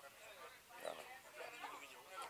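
Faint voices in the background over quiet outdoor ambience.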